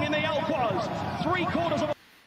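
Horse-race commentator calling the finish of a race in fast, continuous speech over steady background noise. It cuts off abruptly near the end.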